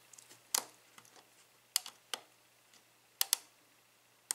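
Steel lock pick and tension wrench clicking against the pins and plug of an EVVA euro cylinder lock during single-pin picking: about five sharp, irregular clicks, two close together a little after three seconds, with faint ticks between.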